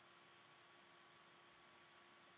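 Near silence: room tone, a faint steady hiss with a faint constant hum.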